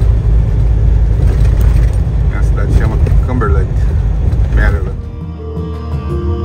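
Steady low rumble of a truck driving on the highway, heard from inside the cab, with a voice briefly heard. About five seconds in, the road sound cuts to soft background music.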